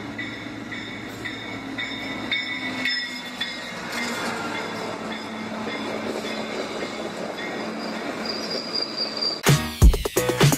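GO Transit bilevel commuter train running past the platform, its rolling noise growing louder, with thin high-pitched wheel squeals over it.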